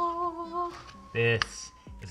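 A person's voice humming one held, steady note that stops about two-thirds of a second in, followed just after a second in by a short, loud vocal exclamation.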